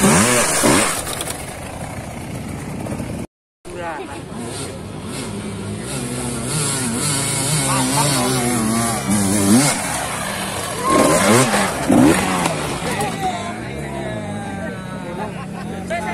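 Dirt bike engines revving hard on a steep dirt hill climb, the pitch rising and falling again and again as the throttle is worked. The sound cuts out completely for a moment a little over three seconds in.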